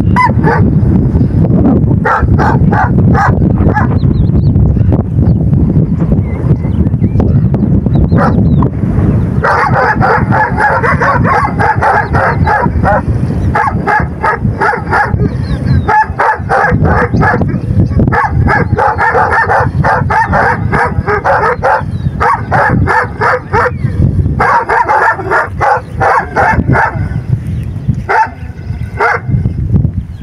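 A pack of large shepherd-type dogs barking, several at once in fast, overlapping runs that grow heavier about a third of the way in, over a constant low rumble.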